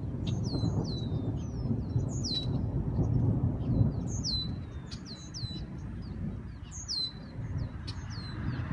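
Thunder rumbling low, swelling to its loudest about three to four seconds in and then fading. Over it, a bird repeats short chirps that slide down in pitch every second or two.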